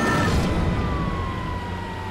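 Emergency vehicle siren sounding a single slow, falling wail over a low vehicle rumble.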